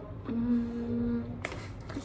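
A girl humming one steady, held note with her mouth closed for about a second, followed by a couple of light clicks.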